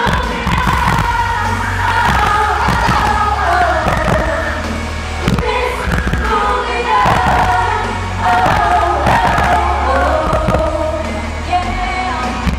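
Live pop music: a female vocal group singing with a full backing track. Heavy bass and a steady drum beat come in suddenly at the start under the sung melody.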